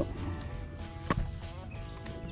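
Quiet background music with steady held notes, over a low outdoor rumble, and one sharp click a little past a second in.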